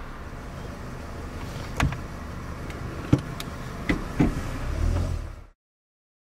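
Low steady rumble inside a car, with a few sharp clicks scattered through it and a low swell near the end, then the sound cuts off suddenly.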